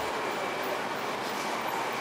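Steady hiss and rumble of urban street traffic, with cars driving past.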